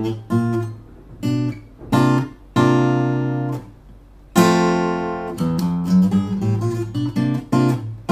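Takamine acoustic guitar fingerpicked slowly: single bass notes and chords plucked one at a time with short pauses between them, a chord left ringing about four and a half seconds in, then a quicker run of notes near the end.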